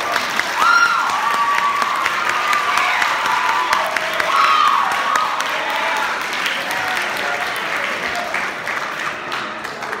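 Audience applauding and cheering in a concert hall, breaking out suddenly, with a couple of whoops in the first few seconds, then slowly dying down.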